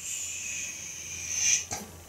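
Dry-erase marker drawn across a whiteboard in one long stroke: a steady, high squeak lasting about a second and a half that gets louder just before it stops.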